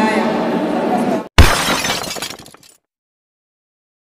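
Voices and background sound cut off abruptly about a second in. A sudden crash like breaking glass, a transition sound effect, then rings away over about a second.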